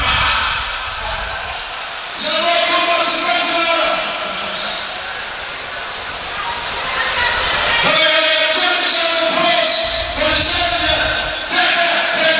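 Boxing crowd in an indoor hall, a loud mix of many voices and cheering reacting to a knockout, swelling about two seconds in, easing off, then swelling again near the end.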